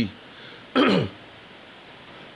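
A man clearing his throat once, briefly, about three-quarters of a second in, with only low room noise around it.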